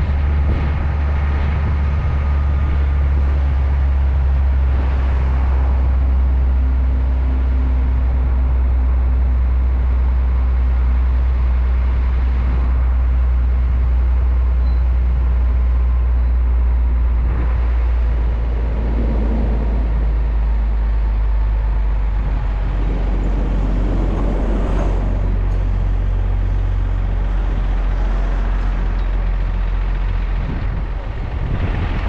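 A car transporter truck driving, its engine giving a steady low drone under road and wind noise, heard from a camera on the roof of the minibus it carries. A couple of brief swells of noise come in the second half.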